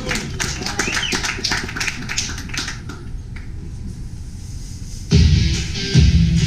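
Audience applauding, the clapping thinning out over the first few seconds, then loud guitar-driven rock music starts suddenly about five seconds in.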